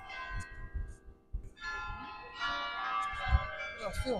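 Church bells of the Stevenskerk ringing: several steady, overlapping bell tones that die away about a second in and then sound again with a new set of strokes.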